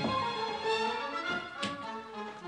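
Orchestral film score with bowed strings playing sustained, shifting notes, growing softer toward the end. A single short tap sounds near the end.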